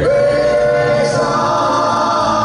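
Live Latin band music with singing: a long held sung note begins at the start and lasts about a second, with voices together over the band.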